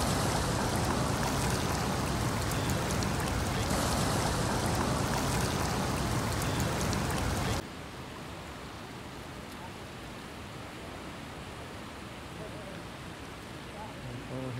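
Steady rushing outdoor noise, water or wind on the microphone, loud at first and then cutting suddenly to a quieter hiss about seven and a half seconds in.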